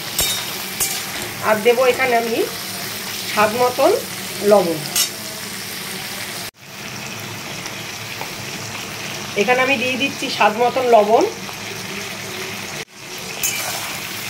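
Giant river prawns (golda chingri) frying in hot oil in a kadai with a steady sizzle, stirred with a metal spatula that scrapes and clicks against the pan. A voice is heard in short stretches three times, and the sound cuts out abruptly for an instant twice.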